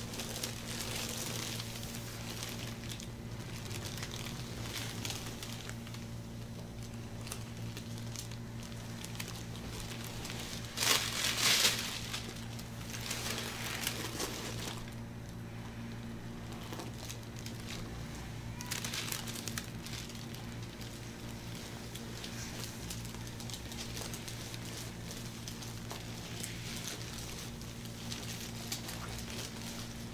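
Gloved, oiled hands sliding and kneading over bare skin during a back massage, with soft crinkling and rustling and one louder rustle about eleven seconds in, over a steady low room hum.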